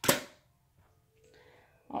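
A single sharp clack or smack at the very start, short and fading within a quarter second, then near quiet.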